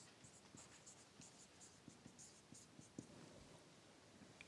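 Faint squeaks and scratches of a marker writing on a whiteboard, a quick run of short strokes.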